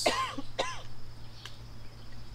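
A man's short throat-clearing chuckle: two quick bursts in the first second.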